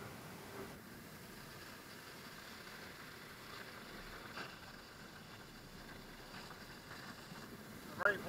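Ocean surf breaking and washing up the beach, a steady hiss of wave noise.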